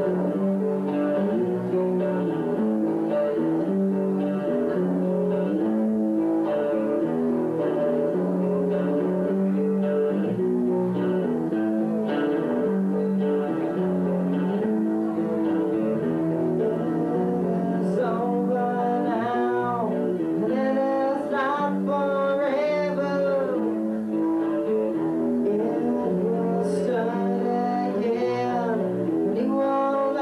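Live rock band playing a mellow song on electric guitars; a man starts singing about eighteen seconds in.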